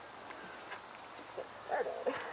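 A dog whimpering faintly, with two short whines near the end.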